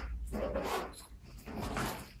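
Nylon backpack rustling and scuffing as it is handled and pulled open, in two bursts.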